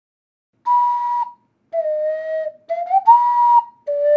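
Ocarina playing a slow tune in pure, breathy held notes, starting about half a second in: a high note, a lower one that slides up, then the high note again.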